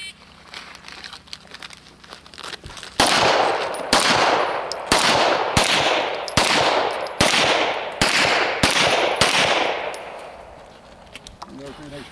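A shot timer beeps once at the start. About three seconds later a handgun fires about nine shots, roughly one every 0.8 seconds, each with a short echo trailing after it; the firing stops a little past nine seconds in.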